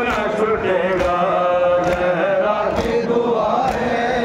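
A man chanting a nauha, a Shia lament, in long held notes through a handheld microphone. Sharp rhythmic chest-beating (matam) thumps come about once a second.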